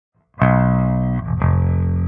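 Music Man electric bass played through a Harmonic Percolator-style fuzz pedal into an amp: two distorted, sustained notes rich in overtones, the first starting about half a second in and the second a little under a second later.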